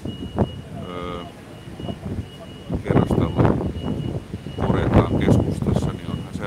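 A construction vehicle's reversing alarm beeping over and over at a building demolition site, heard over street traffic, with voices nearby.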